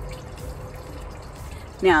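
Low, steady background rumble with a faint steady hum. A woman's voice starts near the end.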